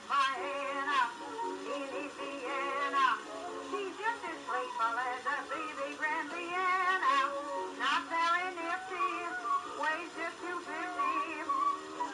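A 1921 acoustic-era gramophone recording of a woman singing a popular song with strong vibrato. The sound is thin, with no bass at all.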